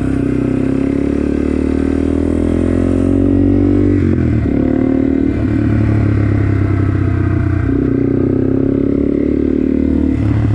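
Yamaha TW200's single-cylinder four-stroke engine pulling the bike along, its note climbing steadily for the first four seconds, dropping sharply at a gear change about four seconds in, then climbing again with another rise near the end.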